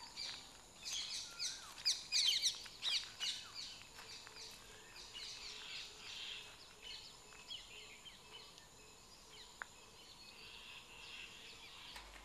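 Birds chirping and calling: a busy run of short, quick chirps in the first few seconds, thinning out to scattered calls after.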